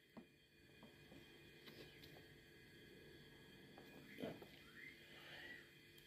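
Near silence with a few faint clicks. Near the end a pet parrot gives a faint, short whistle that rises and falls in pitch.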